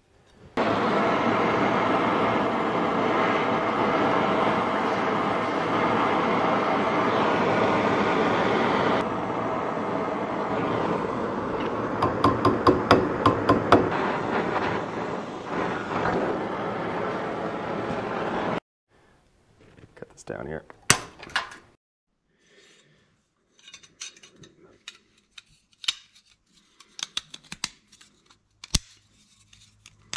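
Oxy-acetylene torch flame hissing steadily while heating a steel wire rod being bent around a socket held in a vise, with a quick run of sharp metallic taps about midway. The torch stops abruptly, followed by scattered light clinks and knocks of metal parts handled on a steel bench.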